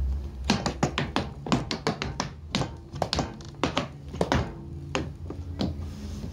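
Tap shoes striking a wooden deck in a quick, uneven run of crisp taps and clicks: the waltz clog, a tap step of shuffles, ball changes and bells in three-four time. A steady low hum lies underneath.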